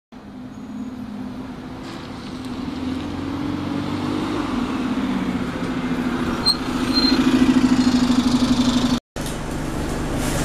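Alexander Dennis Enviro200 single-deck bus's diesel engine, growing louder as the bus approaches and pulls in, with two short high brake squeaks as it stops. The engine note then pulses evenly until the sound cuts off about nine seconds in.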